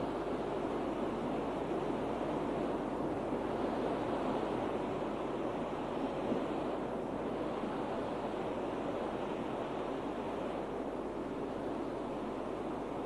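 A steady, even rushing noise with no distinct events, no speech and no music.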